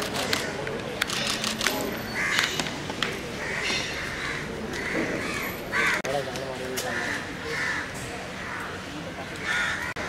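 Crows cawing, a harsh call roughly every second, over the steady murmur of a crowd talking. Several sharp clicks come in the first two seconds.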